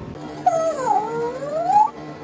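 A young child's voice drawing out one long sing-song word, with the pitch dipping and then rising over more than a second.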